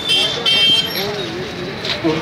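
A vehicle horn sounds a short, high beep in two quick parts near the start, over men's voices in a street crowd.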